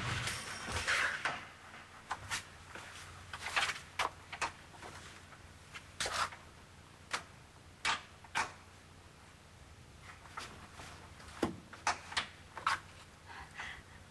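A heavy door closing with a knock, then scattered knocks and clicks of its handle and latch being tried: the door is locked.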